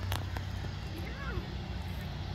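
Outdoor background: a steady low hum, with one brief click near the start and a faint, distant voice around the middle.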